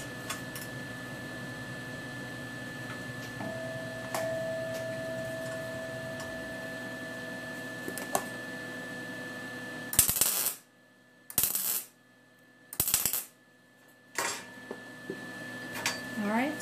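MIG welder arc crackling in four short tack welds on steel silverware, each about half a second long and the last one shorter, starting about ten seconds in. Before them there is a steady low shop hum with a few faint handling clicks.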